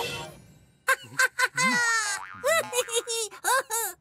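Cartoon magic sound effects: a short puff that fades away in under a second as the word's magic goes off, then a quick string of short, springy pitched sounds and wordless character noises that slide up and down in pitch as the gingerbread man appears.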